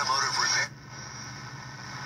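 A 1964 Arvin eight-transistor AM pocket radio playing a broadcast announcer's voice through its small speaker. The voice cuts off about two-thirds of a second in, leaving a faint low hum and hiss.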